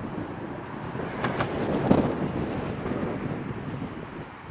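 Wind buffeting the microphone over traffic noise on a bridge, swelling to its loudest about two seconds in, with a couple of brief clicks a little after one second.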